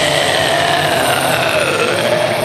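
Heavy metal intro music breaks down to one long held note while the drums and bass stop; the note sags slowly in pitch and swings back up near the end.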